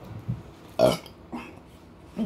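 A woman burps loudly once, about a second in, after drinking carbonated seltzer water, with a fainter, shorter throat sound just after it.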